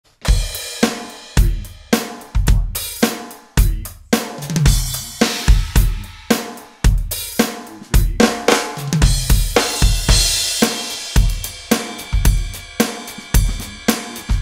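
Drumtec electronic drum kit played as a full drum groove: kick drum, snare, hi-hat and cymbals in a steady beat of about two strong hits a second, with a bright cymbal wash about ten seconds in.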